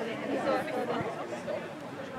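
Indistinct chatter of several people talking at once.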